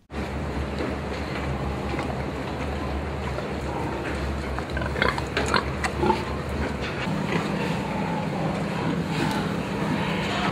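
Pigs calling in a confinement barn of metal sow crates, over a steady low mechanical hum. A cluster of sharper calls comes around five to six seconds in, and a second steady hum tone joins about seven seconds in.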